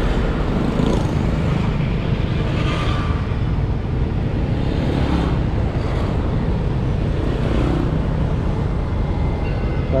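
Steady city street traffic heard from a moving motorbike, with a continuous low rumble of engine and wind on the microphone.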